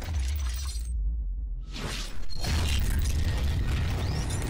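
Cinematic sound effects of an animated logo intro: a deep, steady bass rumble. About a second in, the higher sounds drop away. A sudden shattering hit comes just before two seconds, followed by dense crackling noise.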